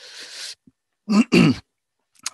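A man clearing his throat: a short breathy rasp, then two loud quick bursts about a second in.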